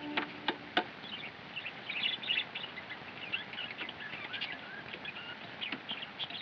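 Three sharp knocks of a small hammer tacking a paper notice onto a wooden post within the first second, then birds chirping in the background.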